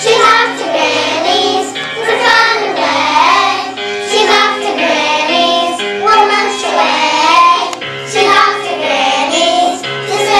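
Children singing a song together over instrumental accompaniment, with a steady bass line moving from note to note underneath.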